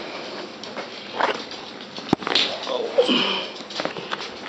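West Highland White Terrier puppy sniffing close to the microphone, with a sharp click about halfway through and a short falling pitched sound a little later.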